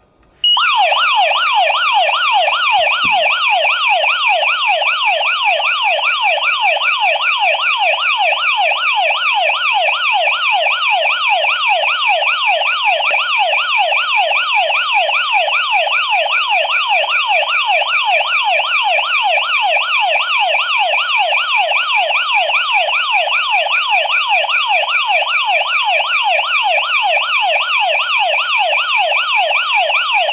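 HOMSECUR H700 burglar alarm panel's siren sounding, set off by a triggered motion sensor while the system is armed. A loud, fast, evenly repeating rising sweep that starts about half a second in and keeps going without a break.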